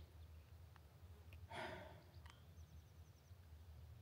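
Near silence with a man's slow, breathy exhale about a second and a half in. A faint quick run of high chirps follows.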